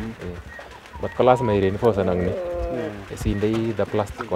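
Domestic doves cooing, with one long, low call about two seconds in.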